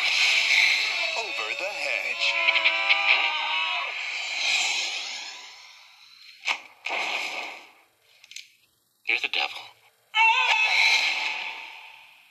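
Movie trailer soundtrack heard through a portable DVD player's small speaker: music with singing for about six seconds that fades away, followed by a few short, separate bursts of sound.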